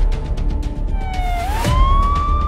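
Graphics-sting music with heavy bass and a fast, even beat, over which a siren sound effect wails once: it dips in pitch about a second in, then rises and holds.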